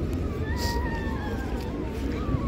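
A cat's long drawn-out meow, slowly falling in pitch, over the low rumble and chatter of a busy street.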